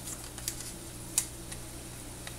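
Minced garlic starting to fry in oil in a stainless steel saucepan: a couple of sharp pops over a steady low hum.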